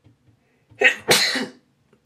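A woman coughing twice in quick succession, a short cough and then a longer one, set off by the urge to sneeze.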